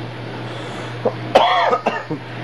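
A short cough about a second and a half in: a sharp burst with a brief voiced tail, preceded by a smaller sound just after one second.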